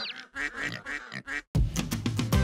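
A quick run of short cartoon farm-animal calls, pig oinks and duck quacks. The audio cuts out briefly about one and a half seconds in, and a new piece of music starts.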